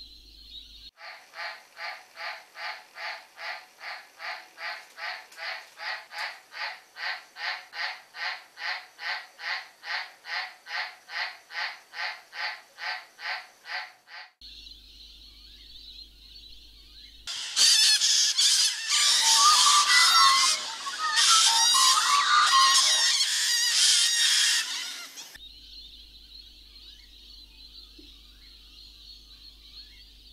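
A soundtrack of animal calls cut together from separate recordings. A call repeats about twice a second for some thirteen seconds. A steady high drone comes next, then a loud, dense burst of calls lasting about eight seconds, then the drone again.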